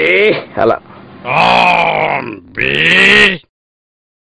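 A voice actor's drawn-out vocal calls in a character voice: four calls, the last two about a second long each, then the sound cuts off suddenly.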